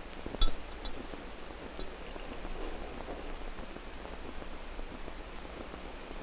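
A single sharp glass clink about half a second in as a glass bell-jar lung model is handled, then a few faint ticks and rustling. Under it runs the steady low hum and hiss of an old film soundtrack.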